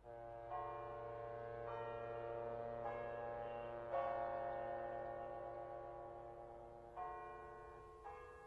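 Soft bell-like music: chime tones struck one after another, each ringing on and slowly fading, with new notes coming in about every second and a longer held stretch in the middle.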